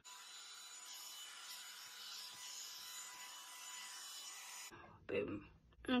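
Revlon One-Step hair dryer brush running: a steady airy hiss with faint thin whining tones, cut off abruptly after about four and a half seconds.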